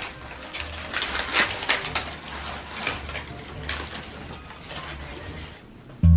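Gift packaging crinkling and rustling as it is gathered up by hand, in a long run of short, uneven crackles.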